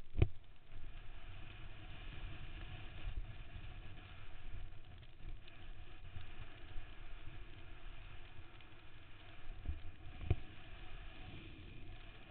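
Mountain bike riding downhill over dirt and gravel, heard from a camera on the rider: a steady rumble of tyres and air on the microphone, with sharp knocks from bumps, the loudest just after the start and another about ten seconds in.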